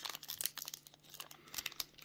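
Foil wrapper of a 2021 Panini Diamond Kings baseball card pack being torn open and crinkled by hand: a run of small crackles, sparser in the second half.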